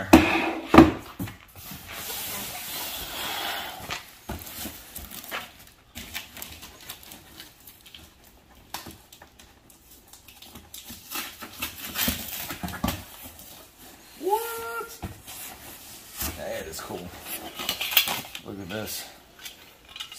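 Hands rummaging in a cardboard box: cardboard flaps and packing material rustling, with scattered knocks and clatters as items are shifted. There is a brief pitched vocal-like sound about two-thirds of the way through.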